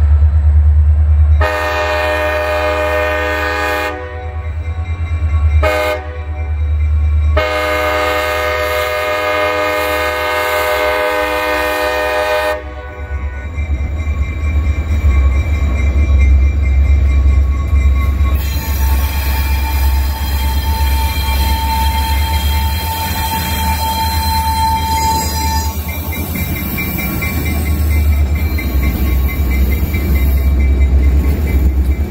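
Wisconsin & Southern diesel locomotive sounding its horn for a grade crossing: a long blast, a short blast, then a long blast held about five seconds. The diesel engine's low rumble then carries on loudly as the locomotive rolls up and passes close by.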